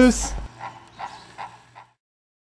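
The end of a long, drawn-out spoken "Tschüss!" in a steady voice, finishing in a hiss. A few faint, short sounds follow before the audio cuts to silence near the end.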